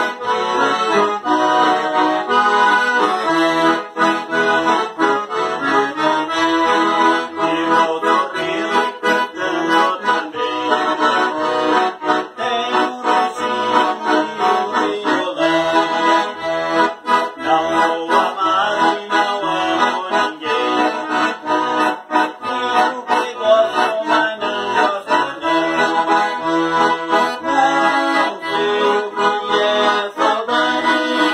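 Two piano accordions, one a Scandalli, playing a waltz in E major together as a duet, with a sustained melody and chords over a regular rhythmic bass accompaniment.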